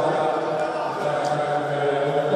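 Crowd of spectators chanting together in an ice hockey arena, the voices held on sustained notes, with a few faint knocks.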